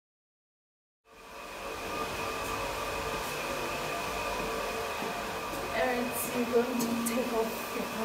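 Steady whirring hum of an electric fan motor with a few steady tones in it, starting about a second in. Faint voices and a few light clicks come in the second half.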